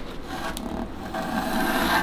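Scratchy rubbing on a wooden board as a thin wooden violin template is handled and traced around with a mechanical pencil. It grows louder in the second half and cuts off suddenly at the end.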